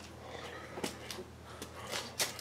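A quiet pause: faint steady background hum with a few soft clicks.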